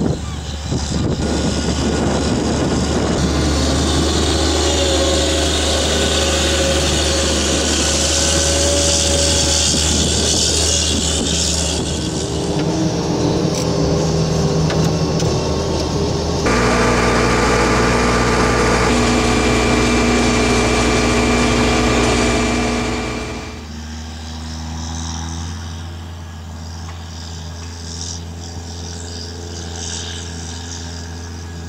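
Challenger TerraGator 8333 self-propelled slurry injector's diesel engine running steadily under load, with a high hiss or whine over it in the first part. The sound changes abruptly twice, and is quieter in the last several seconds.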